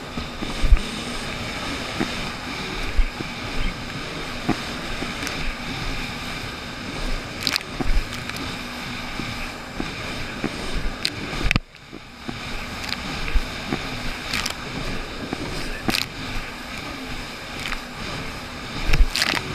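A jet ski engine running steadily under way, with irregular thumps and splashes as the hull hits choppy waves, plus wind on the microphone. The sound cuts out sharply for an instant about two-thirds of the way through.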